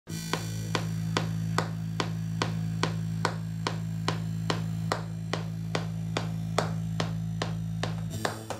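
Electronic music: a steady low synth drone under a sharp, click-like percussion hit about two and a half times a second.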